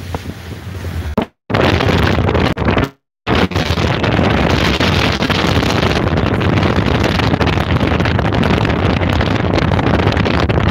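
A motorboat running at speed through chop, with wind buffeting the microphone. The sound drops out twice in the first few seconds, then runs loud and steady.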